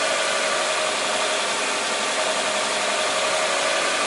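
Car engine idling steadily, heard from beneath the car, warm and running with its oxygen sensor active and the fuel injection constantly being adjusted.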